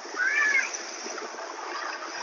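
Recording of the geyser at Disney's Wilderness Lodge: a steady rush of water, almost like wind. A brief high squeak rises and falls about a quarter of a second in.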